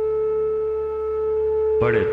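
Background music bed: one steady, held tone with a low drone beneath it. A man's narrating voice comes in near the end.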